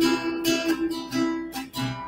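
Acoustic guitar strummed in a steady rhythm, about two strums a second, its chords ringing between them.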